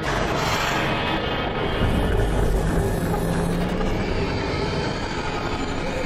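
Horror trailer score and sound design: a dense rumbling drone that starts suddenly after a brief drop-out, with a low held note in the middle, easing slightly near the end.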